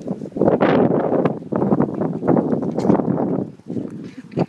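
A pack of raccoons growling and chittering together in a loud, rough, jumbled sound while they jostle for food at a hand, close up. It swells about half a second in and dies down shortly before the end.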